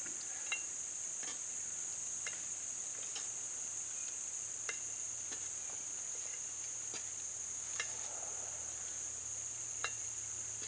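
Steady high chirring of crickets or other insects. Over it come sharp metallic clicks and scrapes, roughly once a second, from a metal blade working through charcoal ash on a metal tray.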